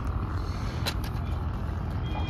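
Steady low rumble of outdoor background noise, with one short click about a second in.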